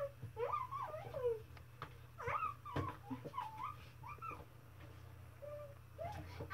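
Short, high-pitched whining calls that waver up and down in pitch, in two clusters, over a steady low hum.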